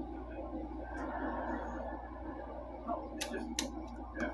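Faint, indistinct voices murmuring in a small room, with two sharp clicks a little after three seconds in.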